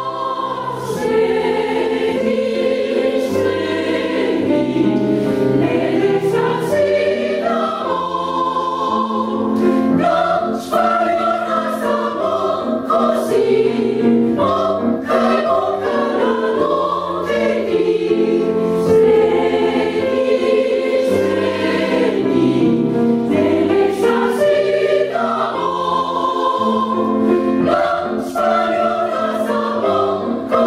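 Women's choir singing, with sustained notes that change pitch continuously and no break.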